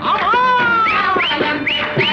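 Music from a 1950s Tamil film song: a long sliding note, then a run of short upward-flicking notes, about three or four a second, over the band accompaniment.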